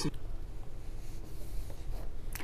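Faint rustling noise over a low steady hum, with a few light ticks.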